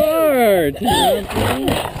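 A person's voice making three long, drawn-out laughs or cries whose pitch slides downward.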